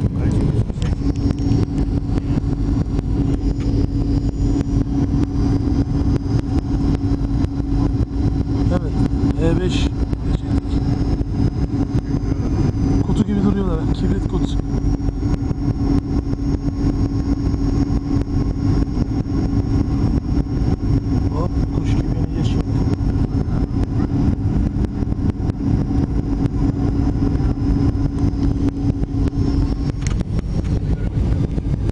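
Airliner cabin noise on descent: a steady rumble of engines and airflow with a constant low drone and a faint high whine running through it.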